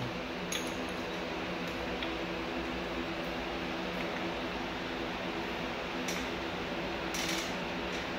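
A steady machine hum with a few light clicks and knocks as an oil funnel and parts are handled.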